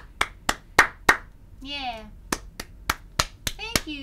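One person clapping hands at about three claps a second, breaking off about a second in for a short vocal exclamation with a falling pitch, then clapping again, with more voice near the end.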